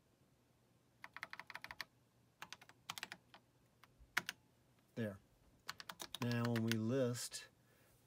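Keys clicking on an Apple IIe keyboard, typed in quick runs as a command is entered, with a few more keystrokes a little later. A man's voice speaks briefly between and after the later keystrokes.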